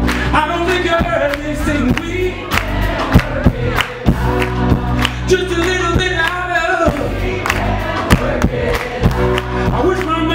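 Live band playing a steady groove: drum kit keeping a regular beat over bass and guitar, with a male voice singing over it.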